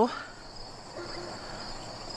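A steady, high-pitched chorus of singing insects.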